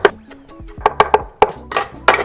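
Knife chopping bamboo shoots on a wooden cutting board: one stroke at the start, then a quick run of about five strokes about a second in, over background music.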